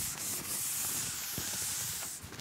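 Chalkboard eraser rubbing across a blackboard: a steady scrubbing hiss as the board is wiped clean.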